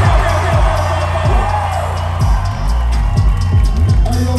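Loud live hip-hop music through a club PA: a deep sustained bass with booming 808-style kick drums that drop in pitch, about two a second.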